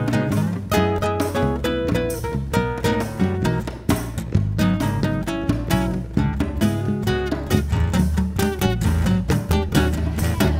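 Live band instrumental break with no singing: guitars lead, a nylon-string acoustic guitar and a hollow-body electric guitar, over a cajon and a steady bass line.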